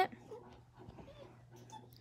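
Golden retriever puppy crying: a few faint, brief whines.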